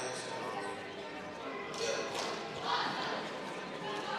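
Indistinct voices of people in a large gymnasium, with quiet music from the sound system in the first part and a couple of louder bursts of noise about two and three seconds in.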